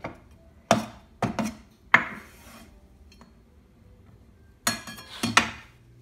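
Kitchen knocks and scrapes of a cleaver and a ceramic plate at a wooden chopping board: four sharp knocks in the first two seconds, then a brief clatter about five seconds in.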